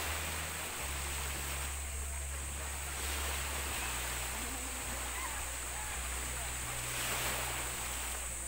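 Small waves breaking and washing over a shallow reef flat at the shoreline: a steady wash of surf that swells slightly twice.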